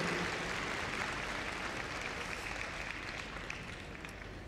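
Audience applause, gradually dying away.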